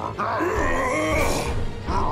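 Cartoon monster growling and grunting over background music.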